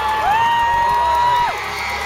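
Large crowd cheering and whooping, many voices rising and falling over one another. One high whoop is held for about a second and breaks off about one and a half seconds in, when the cheering gets quieter.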